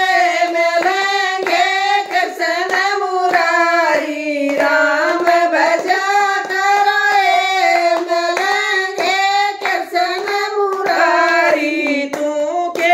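A small group of women singing a Hindu devotional bhajan in unison, keeping time with steady hand claps at about three a second.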